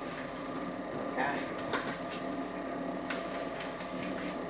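Meeting-room tone: a steady hum with a few short rustles and clicks as papers are handled at a table, and one brief spoken 'yeah'.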